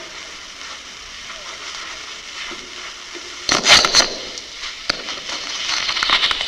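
Hiss and crackle of a covert body-wire transmitter recording, with loud bursts of rustling and handling noise against the hidden microphone about three and a half seconds in and again near the end, as the wearer is patted down. A sharp click comes just before the second burst.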